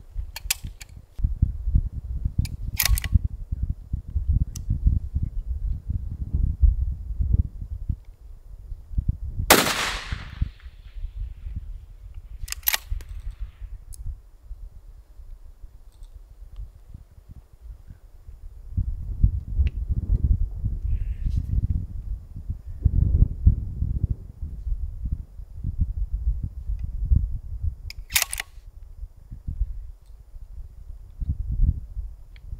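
A single 6.5 Creedmoor rifle shot about nine and a half seconds in, with a short ring after it, over wind rumbling on the microphone. A few fainter sharp clicks come before and after the shot.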